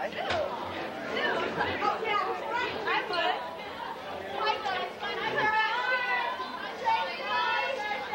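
Chatter of many teenagers talking at once as they walk through a crowded school hallway, with overlapping voices and no single speaker standing out.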